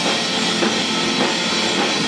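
Live rock band playing an instrumental passage: electric guitar through Marshall amplifiers over a drum kit, loud and continuous.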